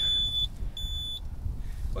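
Electronic beeper on the drone gear sounding two high, single-pitched beeps, each about half a second long and about three-quarters of a second apart.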